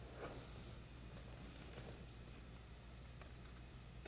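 Near silence: room tone with a steady low hum and a few faint soft rustles as yarn is pulled through an amigurumi piece by hand.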